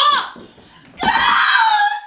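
A woman's loud, high-pitched scream, held for about a second. It starts about a second in and drops slightly in pitch as it ends.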